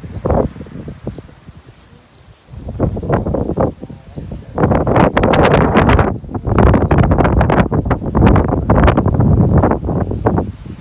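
Strong wind buffeting the microphone in irregular gusts, with a deep rumble; it is lighter in the first half and blows hard and steadily from about halfway through.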